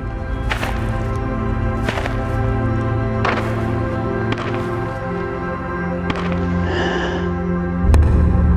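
Slow, wondrous orchestral-style music with deep held notes, over the heavy thudding footsteps of a cricket bowler's run-up, one thud about every second and a half. Near the end comes a sharp inhale, then a loud whack.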